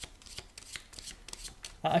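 A deck of divination cards being shuffled by hand: a quick, irregular run of soft card clicks and slides.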